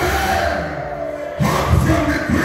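Church congregation singing together with music through the PA, a man's voice leading on a microphone; the singing dips and swells again about one and a half seconds in.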